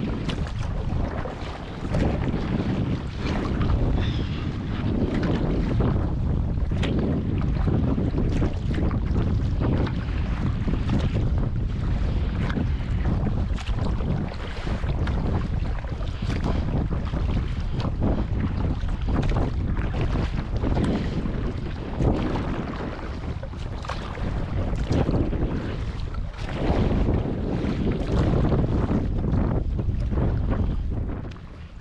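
Wind buffeting the microphone in gusts, over choppy water slapping around a plastic sit-on-top kayak.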